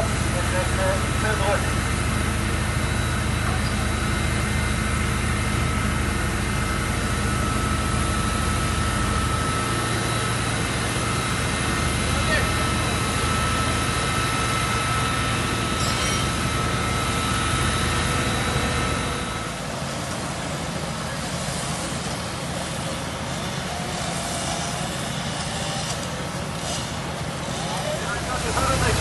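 Fire engines' diesel engines and pumps running steadily at a fire scene: a low rumble with a steady high-pitched whine on top. About two-thirds of the way through, the rumble and the whine drop away and the sound gets a little quieter.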